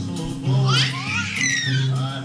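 Babies laughing in high, gliding squeals over music with a repeating bass line; the loudest peal of laughter comes about half a second in.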